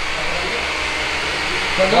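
Steady fan-like rushing noise with a low hum beneath it, holding an even level throughout.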